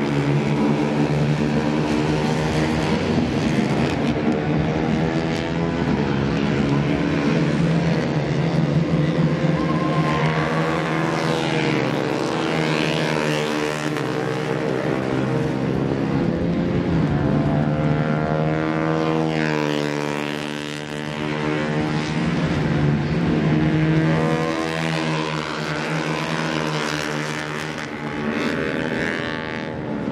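Racing motorcycle engines running hard at high revs on track, several times rising and falling in pitch as bikes accelerate and pass.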